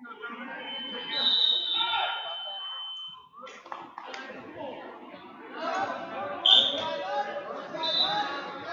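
Spectators' voices and chatter echoing in a gymnasium. A steady, high whistle-like tone runs for about two seconds, starting about half a second in, and short high tones sound near the end.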